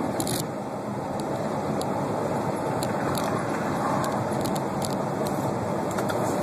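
Steady road and engine noise of a tractor-trailer cruising on the highway, heard from inside the cab, with scattered light clicks and rattles at irregular intervals.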